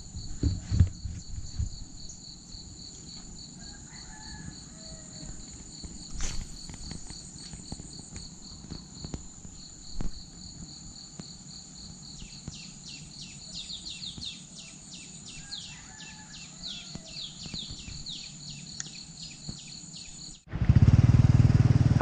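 Insects trilling steadily at two high pitches, with a bird giving a rapid run of short falling chirps in the second half, and a few light knocks and clicks near the start. Near the end a loud low motorcycle engine rumble cuts in suddenly.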